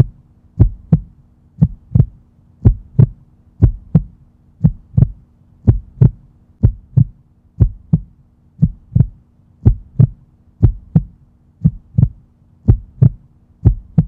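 Heartbeat sound effect: a double thump about once a second, kept steady, over a constant low drone.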